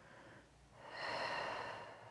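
A woman's long, audible breath out, a soft hiss that swells about a third of the way in and fades away over a second and a half.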